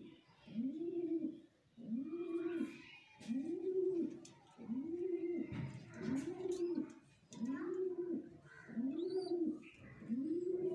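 Domestic pigeon cooing over and over, about one coo a second, each coo rising then falling in pitch.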